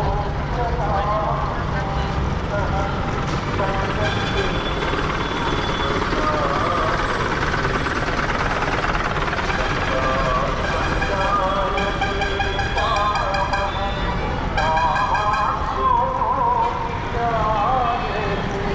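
Busy street ambience: several people talking nearby over a steady low rumble of traffic.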